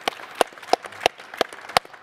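Audience applause, with one set of hands standing out in sharp, regular claps about three a second over fainter clapping.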